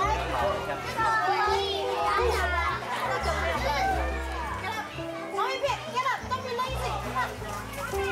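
Children's voices chattering and calling out, with background music with held low notes.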